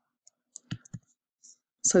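A few scattered light clicks and taps of a pen stylus on a tablet while handwriting, then a woman's voice says "So" near the end.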